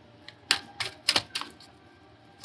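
A handful of short, sharp clicks or taps, about five in under a second, starting about half a second in.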